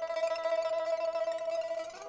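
Pipa playing a single high note held steadily, its loudness flickering rapidly, as the introduction to a Kunju opera aria.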